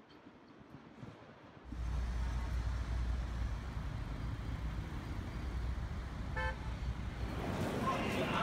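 Outdoor urban background noise: a steady low rumble that starts suddenly about two seconds in, with one short car horn toot near the end.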